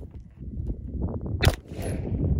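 A single 9mm shot from a Grand Power Stribog SP9A3S roller-delayed carbine about one and a half seconds in, fired with its magazine resting on the ground.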